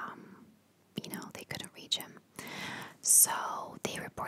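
A woman whispering close to the microphone, with a brief pause near the start before the whispered words go on.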